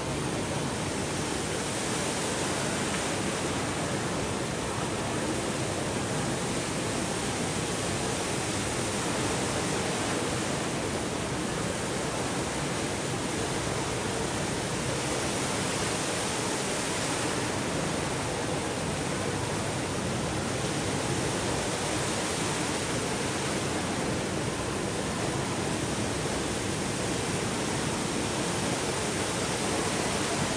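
Indoor waterfall: a column of water falling two storeys from the Rain Oculus's acrylic bowl and crashing into the whirlpool pool below, a steady, even rush.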